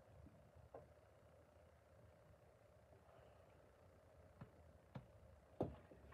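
Near silence, broken by a few faint knocks of the wooden sand-casting flask being handled. The loudest knock comes just before the end, as the top half of the mould is lifted off the sand.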